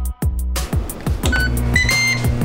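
Background music with a steady bass beat. Over it, about a second and a half in, a Ninja indoor grill's control panel gives a few short electronic beeps as it is set and started, the display going to preheat.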